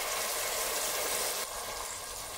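Chopped onions frying in oil in a stainless steel pot, a steady sizzle that gets slightly quieter about one and a half seconds in.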